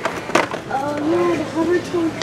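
A sharp clack of plastic blister-packed diecast cars knocking against metal peg hooks as they are handled, with a voice talking faintly in the background afterwards.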